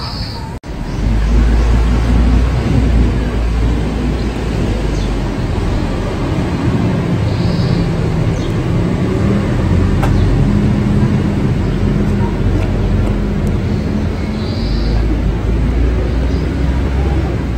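Steady low traffic rumble with a faint engine hum. Three short high chirps come about seven seconds apart.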